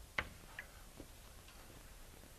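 A stick of chalk taps sharply once on a blackboard just after the start, as the last stroke of writing is finished. A couple of fainter ticks follow over quiet room noise.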